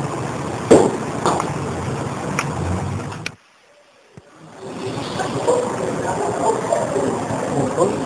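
Room background noise with a few sharp light knocks, cut off abruptly to about a second of silence at an edit. After that, open-air background noise fades back in with faint voices.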